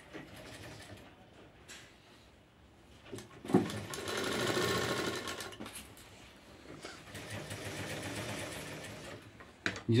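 Sewing machine stitching in two runs: a loud burst of fast, even stitching a few seconds in lasting about two seconds, then a quieter, slower run near the end, as a sleeve is sewn into a blouse armhole. Light rustling of fabric being handled comes before the stitching.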